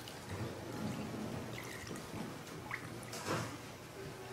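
Spicy V8 juice pouring in a quiet, steady stream from a large plastic bottle into a ceramic bowl of shrimp, with a soft liquid splash as it fills the bowl.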